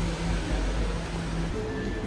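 Steady low hum and rumble of indoor room noise. Background music comes in near the end.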